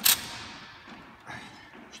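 A sharp metallic knock as a metal hook on the net's tensioning strap strikes the volleyball net post, its ring fading over about a second, then a fainter knock.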